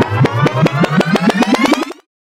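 Intro sound effect of a mechanism spinning up, like a film camera's reel: clicks that come faster and faster under a rising tone, cutting off suddenly at the end.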